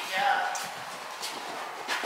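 A few soft hoof footfalls of horses on the sand footing of an indoor riding arena, with a faint voice briefly near the start.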